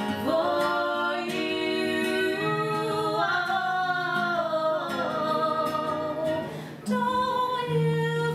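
Women singing a melody to acoustic guitar accompaniment, with a short break about seven seconds in before the next sung phrase begins.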